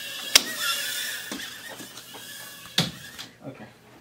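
Micro quadcopter drone's tiny motors whining at a high pitch, with a sharp knock about a third of a second in as the drone hits something. The whine fades after about a second, followed by a few small knocks and a second sharp knock near three seconds.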